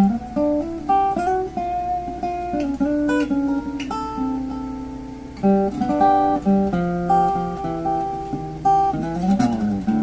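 Archtop acoustic guitar fingerpicked in the key of G: a blues run through G7 and diminished chord shapes over thumbed bass notes. A quick downward slide of notes comes near the end.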